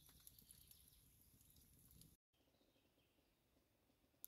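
Near silence: faint background noise, dropping to dead silence for a moment about halfway through at an edit cut, then a fainter hiss.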